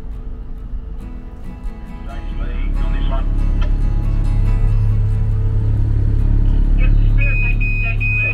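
A motor-sailing catamaran's engines running with a steady low drone that grows louder two to three seconds in. Near the end a high electronic beep sounds repeatedly, about three times a second.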